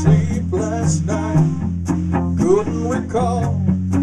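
Rock band playing: electric guitar over drums, with cymbal strokes keeping a steady beat about twice a second.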